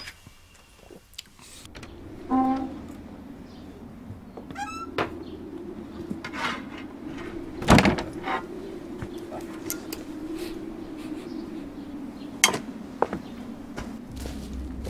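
A low steady hum with a few short knocks and a brief creak, then a loud thud of a heavy wooden door just before eight seconds in, with a smaller knock near the end.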